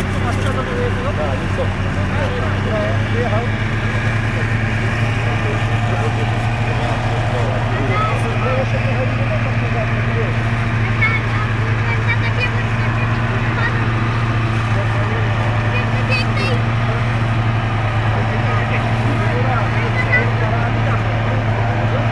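Volvo BV 202 tracked over-snow carrier's four-cylinder petrol engine running at a steady low drone as the vehicle crawls through deep mud and water.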